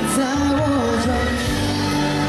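Live pop ballad played through a concert sound system: a male singer's voice holding and bending a melody over a band with bass and drums.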